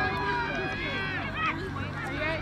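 Several people's voices calling and shouting, not close to the microphone, over a steady low hum.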